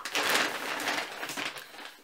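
A shopping bag rustling and crinkling as a hand rummages inside it and pulls out a bottle. The rustling is loudest in the first second and thins out towards the end.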